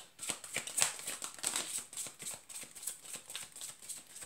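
A deck of tarot cards being shuffled by hand: a quick, irregular run of light card clicks and flicks.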